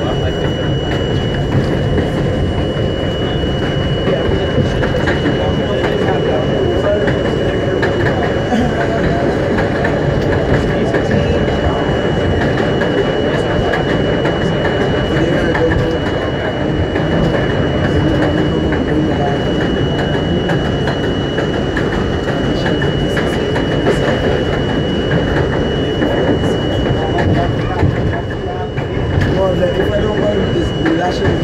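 An R42 subway car running along elevated track: a steady, loud rumble of wheels on rail and car noise, with a thin high tone held over it, and a brief drop in level near the end as the train comes into a station.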